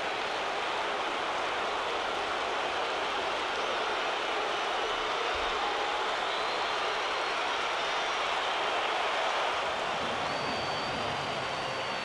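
Stadium crowd cheering a run-scoring hit, a steady roar that swells to a peak about nine seconds in, with a few whistles above it.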